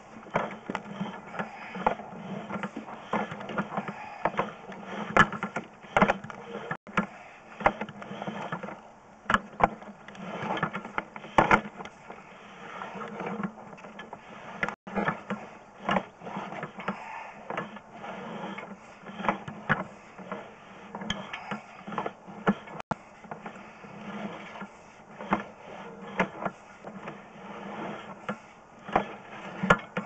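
Sewer inspection camera's push cable being pulled back and wound onto its reel: a steady mechanical rattle with irregular sharp clicks and knocks throughout.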